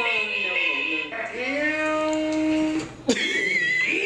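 Voices from a played video clip: talk, then a long drawn-out voice about a second in, then a high wavering voice near the end after a sharp click.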